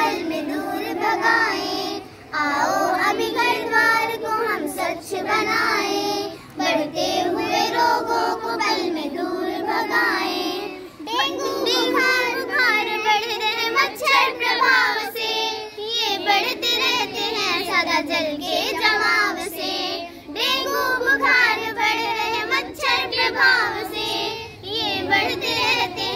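A group of young schoolgirls singing a Hindi song together, in sung lines of a few seconds each with short breaks between.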